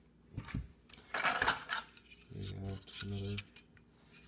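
Circuit boards fitted with aluminium heat sinks being handled and knocked together: a few sharp clicks, then a burst of metallic clattering about a second in.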